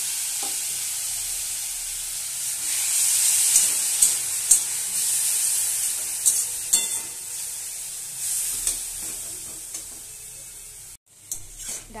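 Grated bottle gourd peel and chickpeas sizzling in a metal wok while a spatula stirs them, scraping and clicking against the pan several times. The sizzle slowly dies down over the stretch.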